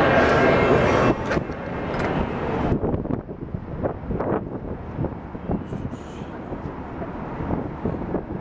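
Crowd chatter that cuts off about a second in, followed by quieter city-street noise: footsteps on the pavement and traffic in the distance.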